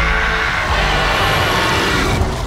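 Loud action-film sound mix: a continuous low rumbling roar with music underneath.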